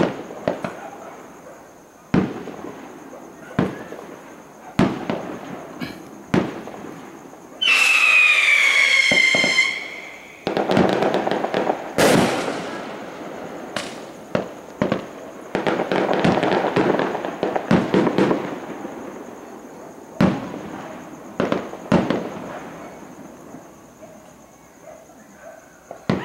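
A fireworks display: a string of sharp bangs from bursting shells. About eight seconds in, a whistling firework sounds for about two seconds, its whistle falling in pitch; this is the loudest sound. Two longer stretches of noisy crackle follow.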